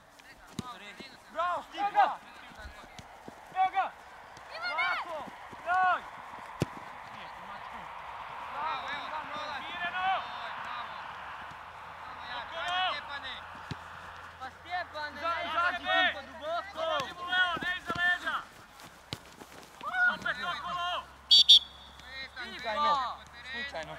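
Short shouted calls from players and coaches on an outdoor football pitch, coming every second or two, with a faint noisy haze in the middle.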